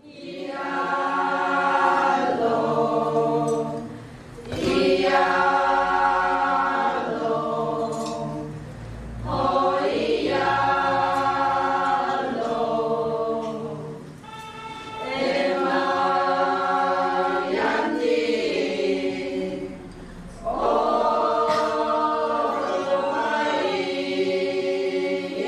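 A group of women singing a traditional Naga song together, unaccompanied, in phrases of four to five seconds with short breaths between them.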